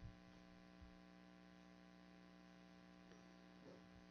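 Near silence with a faint, steady electrical mains hum from the sound system.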